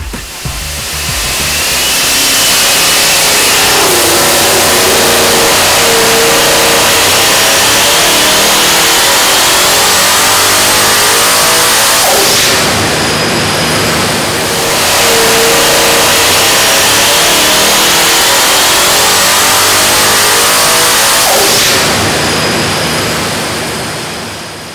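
Twin TorqStorm centrifugal-supercharged 427 cubic inch LS V8 on an engine dyno making wide-open-throttle pulls, its engine note and the high supercharger whine climbing steadily with the revs. One climb lasts about twelve seconds. The sound drops briefly and then climbs again, fading near the end.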